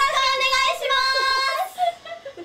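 Young women's high voices singing, one holding a long, steady high note over a lower voice that wavers beneath; the singing stops just before the end.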